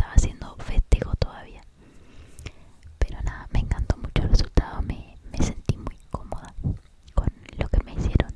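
A woman whispering in Spanish close to the microphone, in short broken phrases with small mouth clicks between them.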